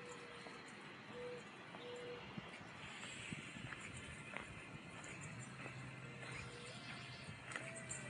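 Short low whistled calls, each under half a second, repeating at uneven gaps of about a second, with a few light footsteps on the path and a steady low hum coming in about five seconds in.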